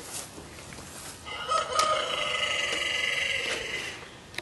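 A rooster crowing once: one long call that starts about a second in and is held for about two and a half seconds.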